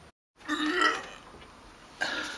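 A sudden drop to dead silence, then a short throaty vocal sound from a man about half a second in, lasting about half a second, followed by faint room noise.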